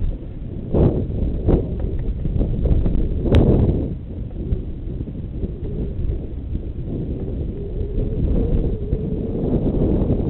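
Mountain bike riding over a dirt trail, heard through wind buffeting an old GoPro's microphone: a steady low rumble of wind and tyres, broken by three sharp knocks about one, one and a half and three and a half seconds in, the last the loudest.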